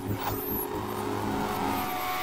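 Channel intro sting: a held low synth chord under a whooshing, swelling sound effect, with a brief high falling tone about half a second in.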